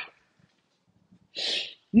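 A woman takes one short, audible breath through the mouth, about a second and a half in, during a pause in her talk.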